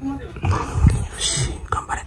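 Several short, soft, whimper-like vocal sounds heard close up, with a breathy, whisper-like hiss a little past halfway.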